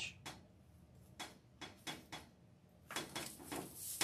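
Faint handling sounds of a deco-mesh wreath on a plastic wreath board: a few separate clicks and rustles, then a louder, busier rustle with clicks in the last second as the wreath is flipped over.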